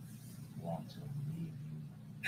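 Faint, muffled voices from an audio tape played back over the courtroom's sound system, hard to make out, over a steady low hum.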